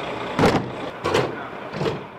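Bus luggage-compartment doors being shut: three heavy thuds, about two-thirds of a second apart, over a steady bus engine running.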